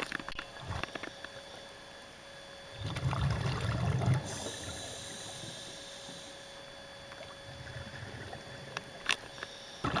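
Underwater sound picked up by a camera in a housing: scattered knocks and clicks with a faint steady hum, a louder low rumble about three seconds in lasting about a second, and one sharp click near the end.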